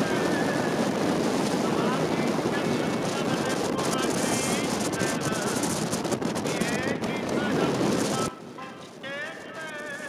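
Strong wind buffeting the microphone: a loud, dense rushing roar that cuts off abruptly about eight seconds in.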